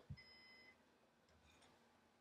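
Synology DS718+ NAS giving one faint, short electronic beep of about half a second, its signal that it has finished booting and is ready.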